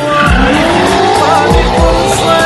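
A car drifting, its engine revving up and its tyres squealing as it slides, mixed with loud music that has a thumping drum beat.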